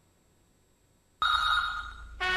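Near silence, then about a second in a sudden high steady ringing tone that fades away.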